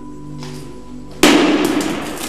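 A steel ball strikes a laminated glass pane, which cracks with one sharp, loud crash about a second in, followed by a brief crackling tail. Soft background music with steady held tones plays throughout.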